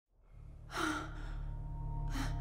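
A low steady rumble fades up from silence, and about a second in a person takes one sharp gasping breath.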